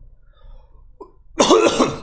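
A man coughs once, a short loud cough about one and a half seconds in.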